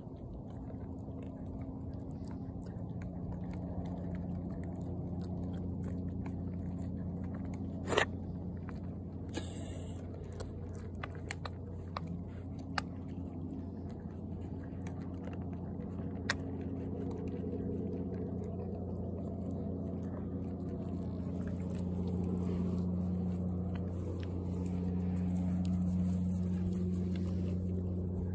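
Two goats chewing and crunching pelleted grain feed from a bowl: a close, continuous run of small crunches and clicks over a steady low hum. A sharp knock comes about eight seconds in.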